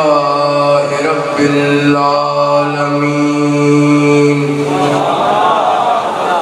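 A man's voice chanting in Arabic over a microphone and PA, drawing the vowels out into long held melodic notes. After a short first note, one note is held for about three and a half seconds before the melody moves again near the end.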